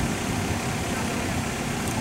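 Steady low rumble of city street traffic, with a vehicle engine idling.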